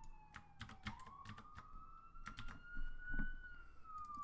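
Quiet, irregular clicks of a computer keyboard and mouse as code is selected, copied and pasted. Behind them is a faint thin whine that slowly falls in pitch, rises, then falls again.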